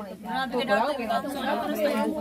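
Several people chatting with one another, voices overlapping in casual conversation.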